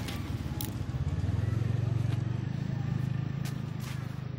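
Snowmobile engine running close by, a low drone that grows louder about a second in and eases off toward the end, with a few light clicks over it.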